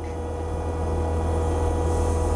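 Kubota SVL75 compact track loader's diesel engine running steadily, heard from inside the cab, with the hydraulic pilot valves starting to work as the loader stick is eased about half an inch; the sound builds slightly as the bucket moves.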